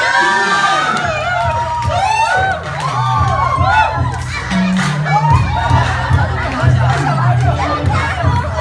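Banquet crowd cheering and shouting excitedly, many voices at once, with background music whose bass line comes in about a second in.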